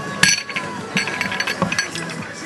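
Metal fire-hose couplings clinking and knocking as the hoses and fittings are handled and laid out, with a sharp clack about a quarter second in and a few lighter clicks later.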